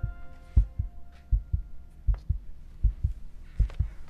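Closing theme music thinning to a beat of deep double thumps like a heartbeat, about one pair every three quarters of a second, with light ticks above. The tune's held notes die away in the first half second.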